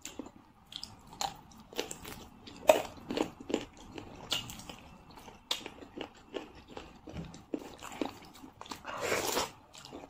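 Close-up eating sounds of a person eating rice and chicken curry with her hands: wet chewing and lip smacks in irregular short clicks, with a longer noisy burst near the end.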